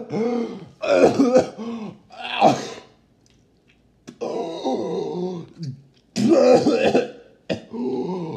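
A man clearing his throat and groaning in a run of voiced bursts, with a quiet gap of about a second in the middle, his mouth burning from a very spicy drink.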